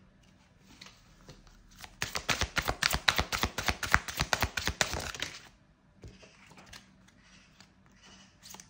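A deck of oracle cards being shuffled by hand: a quick run of sharp card clicks, about nine a second, starting about two seconds in and stopping after some three and a half seconds.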